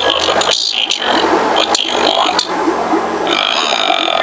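Distorted alien voice effect played through a speaker wired into a Halloween mask, rough and broken by short gaps.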